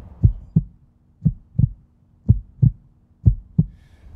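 Heartbeat sound effect: four low lub-dub double beats, about one a second, over a faint steady hum.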